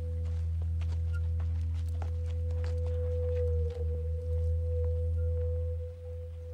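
Film-score drone of a sustained electric guitar: one long held tone that wavers slightly midway, over a steady low hum, with faint scattered clicks beneath.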